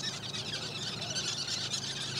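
Faint chirping of small birds over a quiet background hiss.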